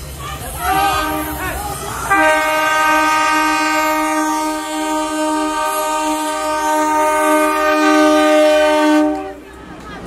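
Train horn sounding one long, steady blast of several notes together for about seven seconds, cutting off near the end, with people's voices just before it.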